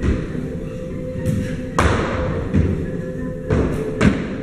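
Ballet pointe shoes thudding on a studio floor as a dancer steps and lands from small jumps: five or so thuds, the loudest about two seconds in, over background music.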